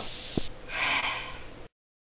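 A person's breathy exhale, after a faint click. The recording cuts off to silence just before the end.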